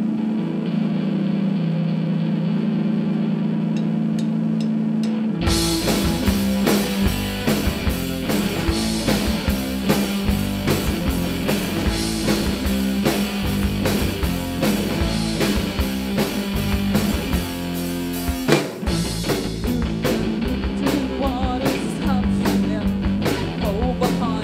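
Live rock band with electric guitars and a drum kit starting a song: held guitar notes ring alone for about five seconds, then the drums and the rest of the band come in together. A little past the middle the band stops for an instant, then carries on.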